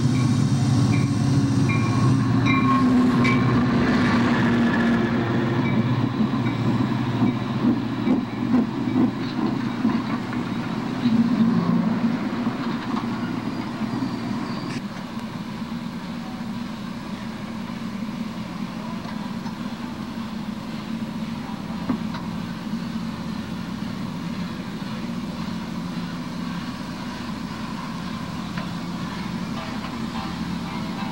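Amtrak F40PH diesel locomotive arriving at the station with its engine running, then clacking wheels around ten seconds in, then a quieter steady rumble as the stainless-steel passenger cars roll past.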